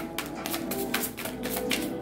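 Soft background music with held tones, and a quick run of light clicks and taps over it.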